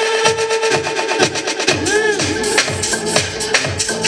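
Techno/house DJ mix playing loud over a club sound system, with a steady four-on-the-floor kick drum. The kick and bass drop out for about the first second and then come back in, and a brief swooping, pitch-sweeping effect sounds around the middle.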